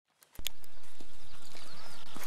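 A pony's hooves striking grassy ground as it moves at a trot or canter under a rider, a few thuds roughly half a second apart over outdoor background noise, starting a moment in.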